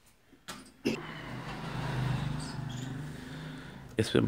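A knock just under a second in, then a motor vehicle's engine going by: a steady low engine sound that swells to its loudest about halfway through and fades away.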